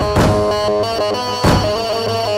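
Live instrumental dabke music: an electronic keyboard plays a held, stepping lead melody over a bass drone, while a drum kit strikes two heavy hits, one just after the start and one about a second and a half in.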